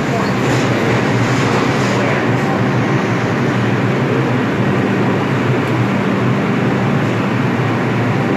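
R142A subway train standing in the station with its doors open, giving a steady low hum over the general din of the underground platform, with people talking.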